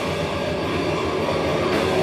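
Metal band playing live: heavily distorted electric guitars and bass with drums, a dense steady wall of sound with no vocals.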